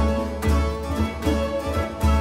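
Small baroque chamber ensemble playing a lively piece: plucked guitar and bowed strings over strong low beats about twice a second.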